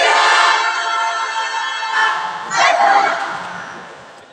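A group of students shouting together in unison: a long held shout, then a second shout about two and a half seconds in that fades away.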